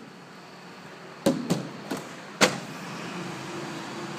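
Several sharp plastic knocks, four over about a second, as the plastic block and crates used to block the parking bays are handled and moved, with a faint steady hum starting near the end.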